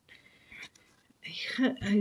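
A quiet first second, then a woman's breathy, whispered voice starting to speak in the second half.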